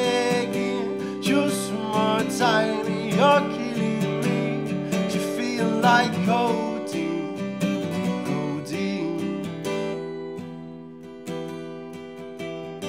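Acoustic guitar strummed under a male voice singing; the voice drops out about seven seconds in, the guitar fades a little, and softer picked notes come in near the end.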